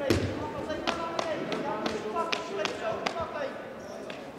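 Sports-hall ambience: a string of irregular sharp knocks and thuds, the loudest right at the start, over a background of many voices talking.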